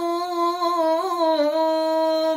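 A man's voice chanting one long held note, with a slight waver in pitch about a second in.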